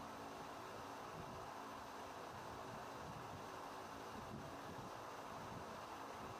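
Faint, steady noise of a CNC machining center drilling a small hole through a rifle receiver, with coolant spraying onto the cut.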